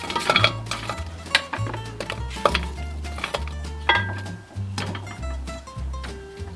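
Fresh apple and grapefruit slices dropped by hand into a cooking pot, with a series of light knocks and clatters against the pot, over background music.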